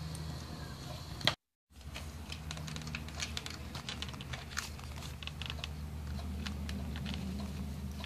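Small scattered clicks and rustles of fingers handling a thin wire, connector and plastic parts inside an opened radio-control transmitter, over a steady low hum. A sharper click comes about a second in, and the sound drops out completely for a moment just after it.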